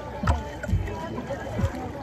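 Small waves slapping against a boat's hull in short low knocks, several times, with voices in the background.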